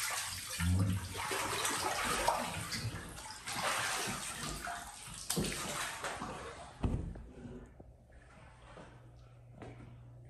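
Salt water in a flotation pod splashing and sloshing as a hand scoops it up and lets it pour back. A sharp knock near seven seconds as the pod's lid is pulled shut, followed by a quieter stretch with a low steady hum.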